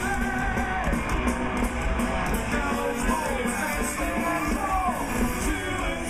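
Heavy metal band playing live through a large outdoor PA, heard from the crowd: distorted electric guitars and drums with steady cymbal hits, and a lead line bending in pitch.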